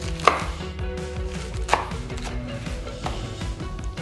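Chef's knife cutting gai lan stems into short lengths on a wooden cutting board: a few separate, unevenly spaced knife strikes on the board, the sharpest about a second and a half in.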